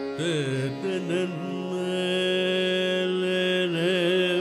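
Carnatic vocal music: a male voice with violin accompaniment sings ornamented, oscillating phrases, then holds one long steady note from about halfway through before turning into ornamented phrases again near the end.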